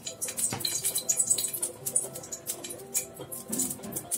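Hot cooking oil crackling and spitting in a steel pot around a bay leaf tempering in it: dense, irregular small pops throughout. A few steady held tones, like soft background music, sound underneath.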